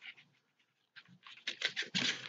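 A quick run of small clicks and taps in the second half as a closed plastic cosmetic case is handled and tried.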